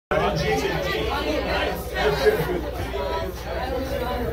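Several voices talking at once in overlapping chatter, with a steady low hum underneath.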